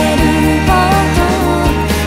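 A Japanese pop song: a sung vocal line over instrumental backing.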